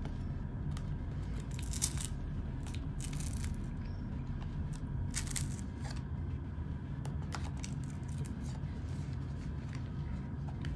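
Worn, flaking ear pad being pried and peeled off a Beats Studio Wireless headphone ear cup with a knife blade. A few short scraping, tearing sounds come about two, three and five seconds in, over a steady low hum.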